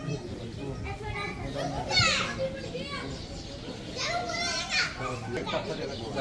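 Chatter of a small crowd, several voices talking over one another, with one raised voice about two seconds in.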